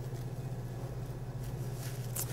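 Plastic cling wrap rustling and crinkling faintly as hands press crumbly dough inside it, over a steady low electrical hum.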